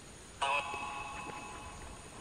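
Spirit box app output: a sudden electronic burst about half a second in, several steady tones at once with a ringing tail that fades over about a second.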